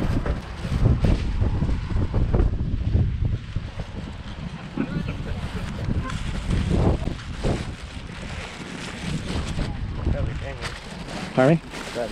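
Wind buffeting a handheld camera's microphone outdoors: an uneven, gusty low rumble, with faint voices in the background.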